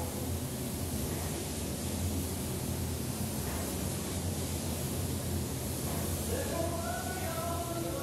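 Compressed-air gravity-feed spray gun hissing steadily as it atomizes epoxy primer, over a constant low hum.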